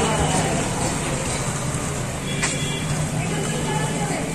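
Outdoor street noise: a steady low engine hum from motor traffic, with scattered voices of people around.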